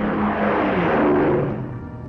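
Twin Rolls-Royce Merlin engines of a de Havilland Mosquito passing low overhead: the engine noise swells to a peak, drops in pitch as the aircraft goes by, and fades about a second and a half in. Orchestral film music plays underneath.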